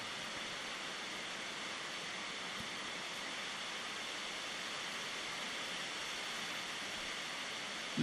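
Steady, even hiss of background room tone with no other sound.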